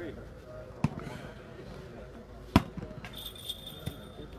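A volleyball being struck by hand during a rally: two sharp smacks about one and two and a half seconds in, the second louder, then a fainter hit near the end.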